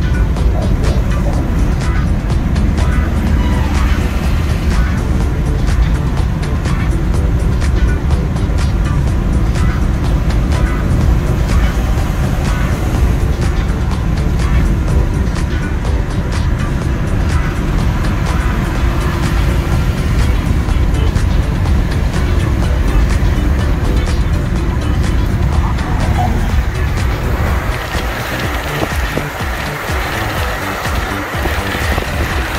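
Steady low road rumble of a car driving at highway speed, heard from inside the cabin, with music playing over it. The rumble eases slightly near the end.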